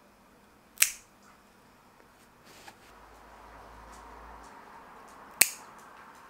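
Two sharp snips of a small pet nail clipper cutting through a dog's dewclaw nail, one about a second in and another near the end.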